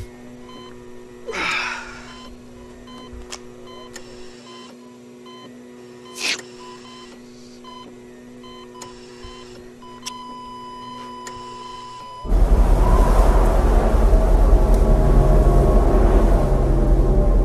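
Electronic beeping of a hospital heart monitor over a steady low hum, with two brief sweeping whooshes, settling into a long steady tone. About twelve seconds in, loud electronic dance music with heavy bass cuts in.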